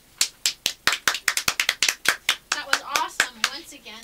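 A few people clapping, the claps sharp and separately audible, with voices joining in over them from about halfway through.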